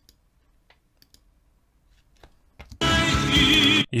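A few faint clicks, then near the end a second-long burst of the stage performance's audio: a sung note with vibrato over full musical backing, cut off abruptly as playback is stopped.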